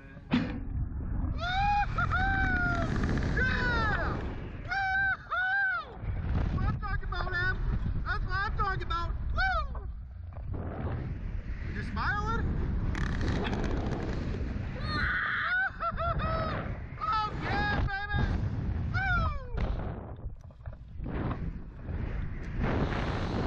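Wind rushing and buffeting the on-ride microphone as the Slingshot reverse-bungee capsule is launched and flung about, over repeated high-pitched screams and shrieks from the riders. The wind starts suddenly just after the start, at the launch.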